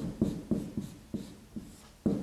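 Strokes of a writing implement as Chinese characters are written: a run of about five short strokes, each starting sharply and fading.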